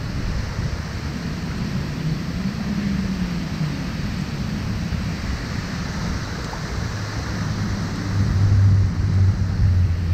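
Steady rush of water spilling over a low concrete weir under a bridge, with wind buffeting the microphone. A deeper rumble grows louder about seven seconds in.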